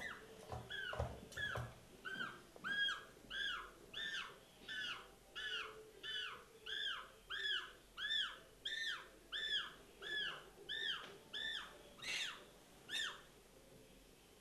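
Penguin chick peeping over and over in a steady run of short, arched calls, about two a second. Near the start there are a few knocks as it is set in the plastic scale bowl. The calls stop near the end, when a hand is laid over the chick and it goes still.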